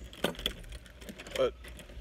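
A scatter of light clicks and small metallic rattles, with a brief voiced hum about one and a half seconds in.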